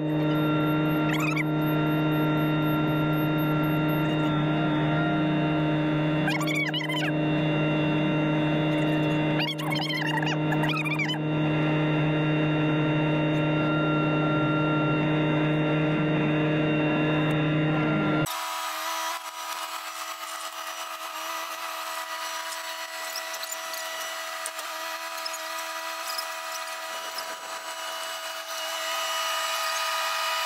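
Kubota SVL90 tracked skid steer's diesel engine running at a steady speed while it carries a long truss on a jib boom, with a few brief squeaks. About 18 seconds in the sound cuts abruptly to a quieter, thinner steady hum.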